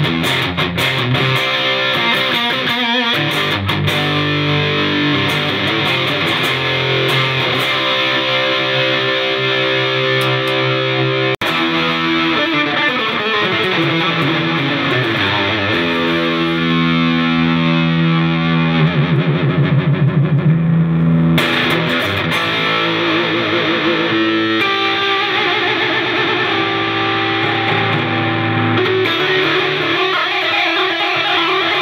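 Homemade yellow-pine orange-crate electric guitar with an EMG-85 humbucker, played with distortion through an amplifier: sustained chords and riffs, with a wavering low note about two-thirds of the way through.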